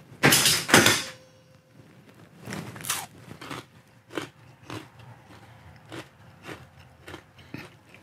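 A crisp pretzel rod crunched between the teeth with a loud bite in the first second, then chewed with short brittle crunches about twice a second.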